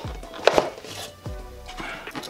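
A cardboard box being handled and opened by hand: a sharp knock about half a second in, then quieter handling sounds.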